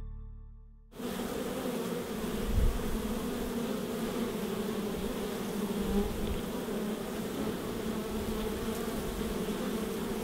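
Music fades out in the first second, then comes a steady, dense buzzing hum of many honey bees at a hive entrance. About two and a half seconds in there is one brief low thump.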